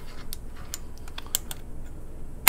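A few light, sharp metal clicks and taps as a Kurt machine vise is shifted by hand on a milling machine table to line it up with the T-slots, over a low steady hum.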